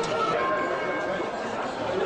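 Crowd chatter, many voices talking at once with no words standing out, as music fades out in the first half.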